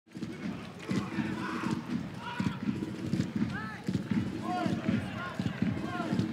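Football match ambience at pitch level: a low murmur of crowd voices with several short, indistinct shouted calls from the players, and occasional knocks that fit the ball being kicked.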